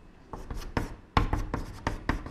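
Chalk writing on a blackboard: a quick run of short taps and scrapes as the strokes of a Chinese character are drawn, the sharpest about a second in.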